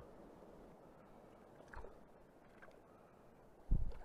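Faint, steady sound of river water, with a small knock about two seconds in and a dull, low thump near the end from the landing net or camera being handled.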